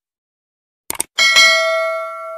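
Subscribe-button animation sound effect: a quick double mouse click about a second in, then a bright notification-bell ding whose ringing tones fade slowly.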